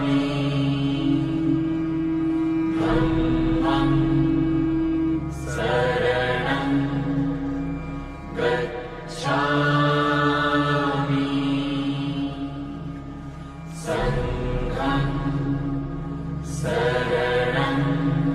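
Buddhist chanting in long held notes over a steady low drone, phrase after phrase, each breaking off every few seconds.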